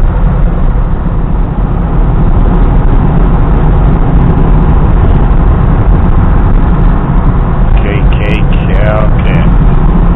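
Steady, loud road and wind noise of a moving car, heard from inside the vehicle. A faint voice comes in briefly about eight seconds in.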